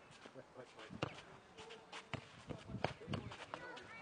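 Scattered knocks and scuffs from a nohejbal rally on a clay court: the ball being kicked and players' feet moving, with faint voices in the background.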